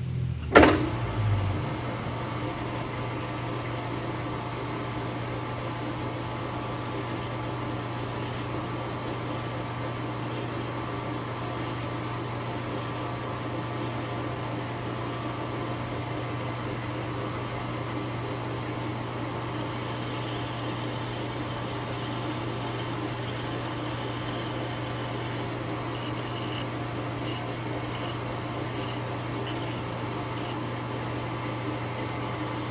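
Metal lathe starting with a clunk and spinning up, then running steadily with a hum of motor and gearing. From about twenty seconds in a higher scraping sound comes and goes: a file held against the spinning metal bushing to break its edges.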